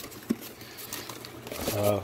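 Plastic packaging bags crinkling and cardboard rustling as a hand rummages in a box of bagged parts; a man says 'uh' near the end.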